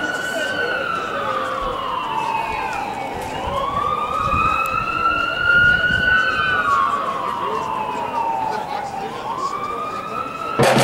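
A siren wailing, its pitch sliding slowly down and back up about every five to six seconds.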